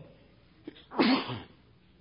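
A man's single short cough about a second in, with a small catch just before it.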